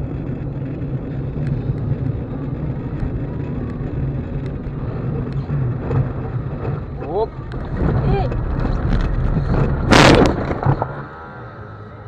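Car engine and tyre noise heard from inside the car on a snowy road, with a short loud bang about ten seconds in as the car slides into a roadside fence. The noise drops sharply just after.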